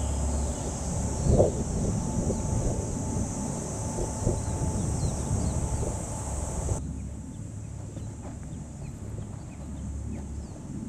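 Wind noise on the microphone in an open field, with a steady high-pitched hiss that drops out suddenly about two-thirds of the way through.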